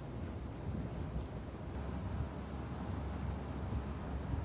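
Low, uneven rumble of wind buffeting the microphone on the open deck of a moving boat, with the boat's engine and hull noise underneath.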